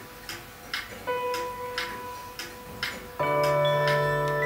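Clock ticking steadily, about two ticks a second, under soft music. A single held note sounds about a second in and fades, then a fuller sustained chord comes in near the end.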